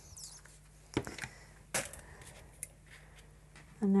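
A few light clicks and taps of small pieces of scrap glass being handled and set in place on a metal mould, the two sharpest about a second in and a little before the middle.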